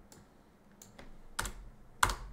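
A few quiet, scattered computer keyboard keystrokes, the loudest about one and a half seconds in, as a selected line of code is deleted.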